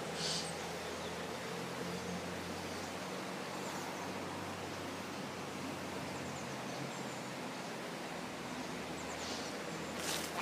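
Steady outdoor ambient hiss, with a short rustle right at the start and a few faint high chirps about four seconds in and near the end.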